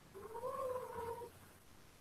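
A single faint, drawn-out vocal call about a second long, rising slightly in pitch and then holding level before it stops.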